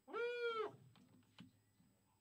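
A single high-pitched cry lasting about half a second, its pitch rising then falling, followed by a faint click about a second later.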